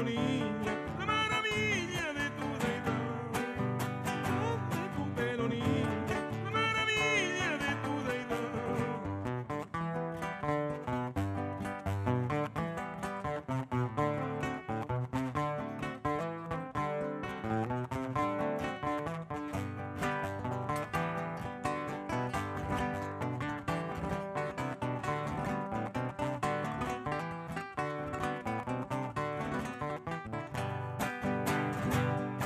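Live acoustic guitars playing a folk love song, steady plucked and strummed accompaniment. A voice holds wavering sung notes in the first several seconds, then the guitars carry on alone.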